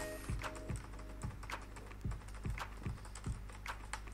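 Computer keyboard being typed on, irregular keystroke clicks coming a few per second, with quiet background music underneath.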